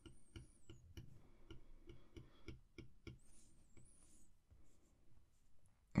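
Faint, quick ticking of an Apple Pencil's plastic tip tapping on the iPad's glass screen as short strokes are drawn, about four taps a second, thinning out after the first half.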